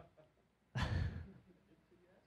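A man's short breathy exhale into a handheld microphone, a stifled laugh, lasting about half a second and starting a little under a second in.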